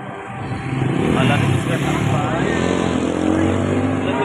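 A motor vehicle engine running close by, getting louder about a second in and staying loud, over people's voices.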